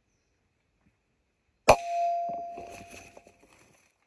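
A single air rifle shot: one sharp crack about halfway through, followed by a ringing tone and scattered small ticks that fade away over about two seconds.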